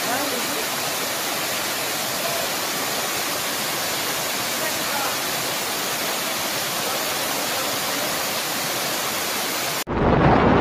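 Waterfall cascading over stepped rock ledges into a pool, a steady rushing noise that cuts off suddenly near the end.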